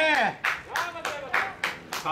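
Hand clapping, about six sharp claps at roughly three a second, applause for a batted ball that has put the batter on base.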